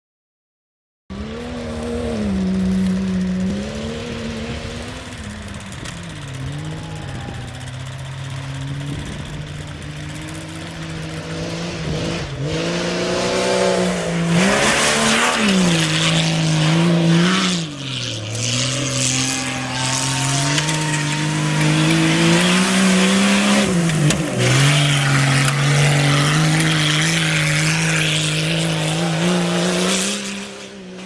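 Lifted Jeep Cherokee XJ race jeep's engine revving as it powers through a slalom, its pitch climbing and dropping again and again with each turn. From about halfway in, a hiss of tyres and flung dirt grows under it. The sound starts about a second in.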